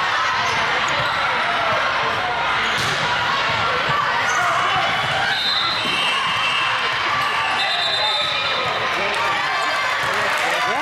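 Echoing gym noise during a volleyball rally: many voices chattering and calling at once, with sneakers squeaking on the hardwood court and a sharp hit about three seconds in.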